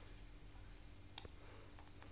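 Quiet room tone with a few faint short clicks, one a little over a second in and two close together near the end.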